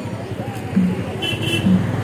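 Street noise of a night procession: a low beat repeating about once a second over a steady rumble and people's voices. Two short high toots come a little over a second in.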